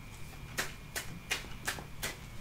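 Tarot cards being shuffled by hand: a handful of soft, irregular card clicks and snaps.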